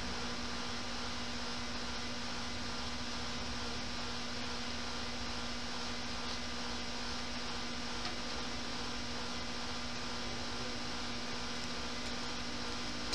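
Steady machine hum with an even hiss and one constant low tone, unchanging throughout, like a fan or similar motor running.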